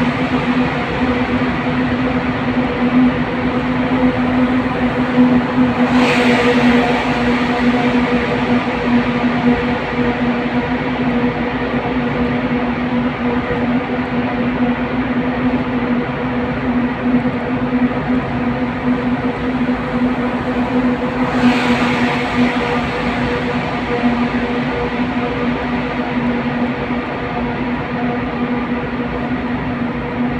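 Car driving through a road tunnel, heard from inside the cabin: steady road and engine noise with a constant low hum, echoing off the tunnel walls. Two louder rushes of hiss come about six seconds in and again a little past twenty seconds.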